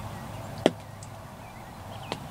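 Wild turkey hen giving a single short, sharp cluck about two-thirds of a second in.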